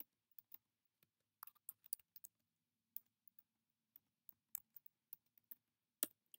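Faint typing on a computer keyboard: about twenty separate keystrokes at an uneven pace as a line of text is typed.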